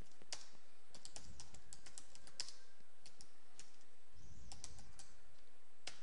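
Typing on a computer keyboard: irregular keystroke clicks, a few a second, with short pauses between bursts.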